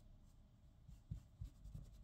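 Near silence with a few faint soft taps and light rubbing in the second half, from makeup being handled while eyeshadow is applied.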